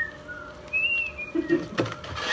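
A person whistling a few short notes. The pure high tones glide up and down with short gaps between them. A laugh comes near the end.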